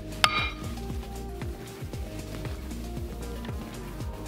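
Background music with a steady beat. About a quarter second in, a single sharp clink with a brief ring as a metal measuring cup strikes a glass mixing bowl while scooping batter.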